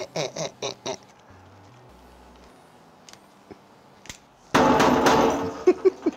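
A few short bursts of laughter, then light clicks and a loud rattling clatter about four and a half seconds in, from a Gen 5 Glock 19 being handled as its magazine release is pressed. The GoSafe Mag magazine, locked to safe, stays seated and does not drop.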